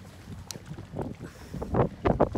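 Wind buffeting the camera's microphone: a low, uneven rumble in gusts that grows stronger near the end, with a brief click about half a second in.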